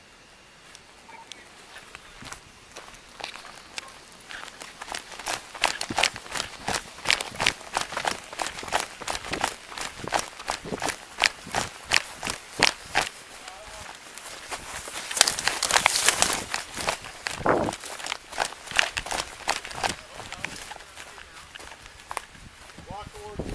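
Footsteps of a person walking briskly, picked up close by a body-worn camera: a steady run of sharp steps, about two a second, with a louder rush of noise for about two seconds past the middle.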